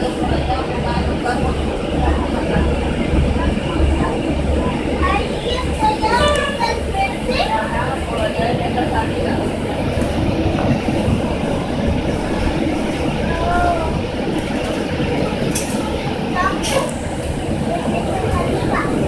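Inside a city transit bus on the move: steady engine and road rumble with a pulsing low throb through the first half. Passengers' voices in the background and a couple of sharp clicks near the end.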